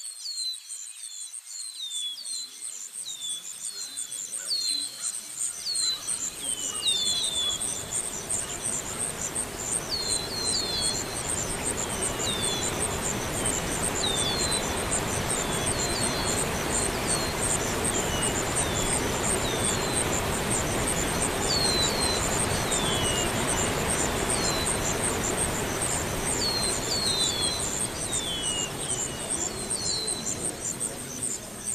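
Outdoor nature ambience: insects trill steadily in a high, pulsing buzz while birds give many short, downward-sliding chirps. A broad, steady rushing noise fades in over the first few seconds and then holds.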